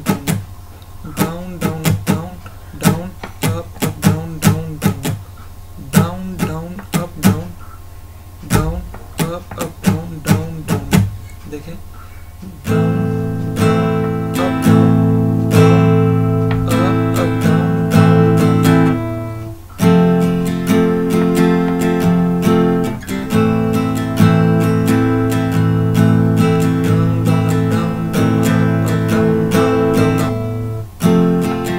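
Acoustic guitar strummed in a long down-down-up pattern: for about the first twelve seconds short, choked strokes that barely ring, then from about thirteen seconds full open chords ringing out, with two brief breaks a few seconds apart later on.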